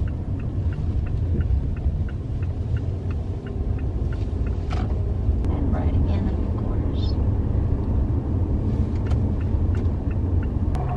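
Steady road and engine rumble inside a moving car's cabin. A turn-signal indicator clicks evenly at about two to three clicks a second, stopping about four seconds in.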